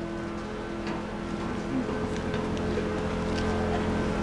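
Vehicle engines idling, a steady low rumble with a few held humming tones that grows slowly louder.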